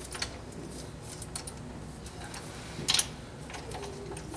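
Light metallic clicks of a spark plug socket and extension being worked in the spark plug well, with one louder short clatter about three seconds in.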